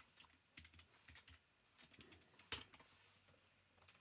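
Faint, irregular keystrokes on a computer keyboard, with one louder key press about two and a half seconds in.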